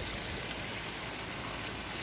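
Steady rush and splash of spring water pouring from an inlet pipe into a concrete fish pond.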